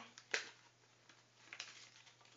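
A folded paper banger flicked once, giving a single short, sharp snap about a third of a second in.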